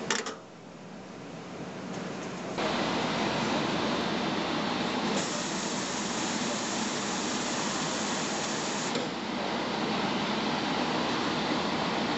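Water spray jets of an aqueous parts washer running inside the wash chamber: a steady, dense hiss that starts suddenly about two and a half seconds in. It is preceded by a brief knock at the very start.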